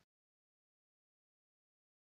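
Silence: the sound track is digitally blank, with no room tone or hiss.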